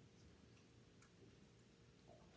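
Near silence: quiet room tone with a wall clock faintly ticking.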